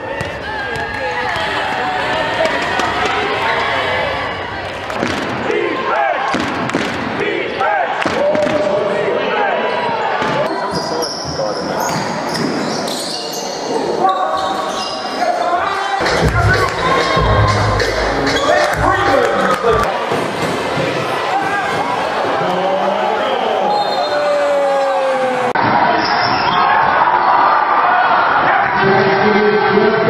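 Live basketball game sound in a sports hall: a ball bouncing on the court among players' and spectators' voices. The sound changes suddenly twice as the footage cuts between games.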